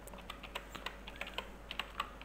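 Quiet typing on a computer keyboard: a quick, irregular run of keystroke clicks as a word is typed.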